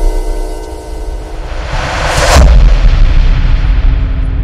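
Cinematic logo-intro sound design: a sustained chord and deep rumble fade away, then a rising whoosh swells into a second deep boom about two seconds in, with a low rumble carrying on under it.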